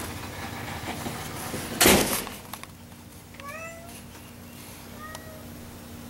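A loud bump about two seconds in, then a cat meows twice: short calls rising in pitch, about a second and a half apart.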